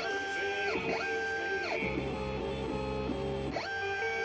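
Guitar-driven music playing over a laser engraver at work: its stepper motors whine as the head sweeps back and forth on raster passes, each pass a rising whine, a short steady tone, then a falling whine.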